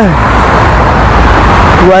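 Steady road-traffic noise, a low rumble with a hiss over it, in a pause between spoken sentences.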